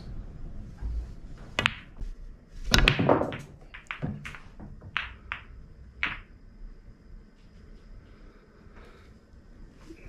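English-style 8-ball shot on a pool table: the cue tip clicks against the cue ball about a second and a half in for a soft screw shot to pot the black. Loud ball knocks follow around three seconds in, then a string of sharper ball clicks over the next few seconds.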